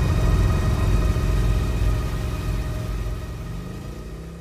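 Harley-Davidson Fat Boy's Milwaukee-Eight V-twin engine running as the motorcycle is ridden, a low pulsing rumble that fades steadily.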